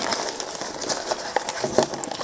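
Plastic packaging wrapping crinkling and rustling as hands pull it open, a continuous run of small crackles.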